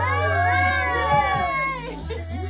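Several high women's voices sliding up and down in overlapping, wavering glides, over a music track whose steady bass drops out about half a second in and returns near the end.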